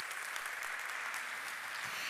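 Audience applauding steadily at the end of a talk.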